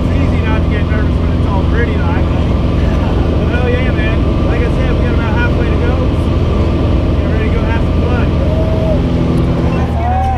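Piston engine of a small jump plane droning steadily, heard from inside the cabin during the climb, with voices talking over it.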